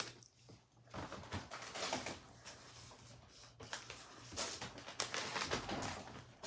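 Faint, scattered rustling of paper gift bags being handled and gathered up, a little louder over the last second and a half.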